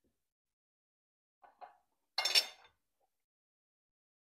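Cutlery clinking against a dinner plate as food is cut and picked up: two light clicks about one and a half seconds in, then a louder, brief clatter a little after two seconds.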